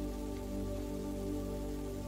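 Soft background music of sustained, steady chords, with no narration.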